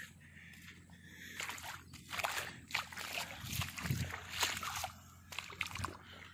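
Footsteps squelching and sloshing in wet river mud and shallow water: an irregular series of soft wet noises starting about a second in.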